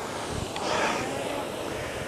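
Concept2 RowErg air-resistance flywheel whooshing through one drive stroke, swelling once and easing off.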